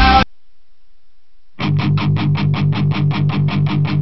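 Rock song stops abruptly; about a second and a half later a guitar comes in, strummed in a steady rhythm of about six strokes a second, and cuts off suddenly.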